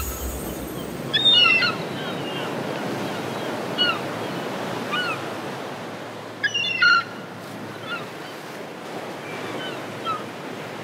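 Steady wash of sea surf, with several short chirping bird calls scattered over it, a few in quick bunches.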